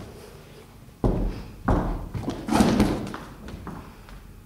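A run of thuds and knocks, as of someone blundering into things in the dark. It starts suddenly about a second in and is loudest around two and a half seconds in.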